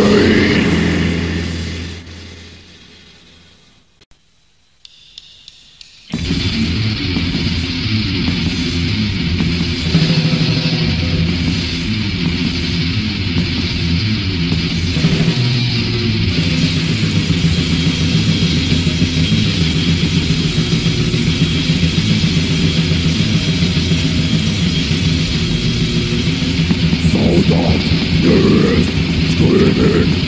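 Black/death metal demo recording from cassette: one song fades out over the first few seconds, a short near-silent gap follows, and the next song starts abruptly about six seconds in with dense distorted guitars and drums. Harsh vocals come in near the end.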